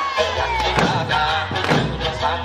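Okinawan eisa music with the dancers' barrel drums and paranku hand drums struck together on the beat, heavy hits landing about once a second.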